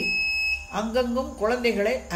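A woman's voice speaking in Tamil, over a low steady hum. A steady high electronic tone sounds for the first half second, before the speech starts.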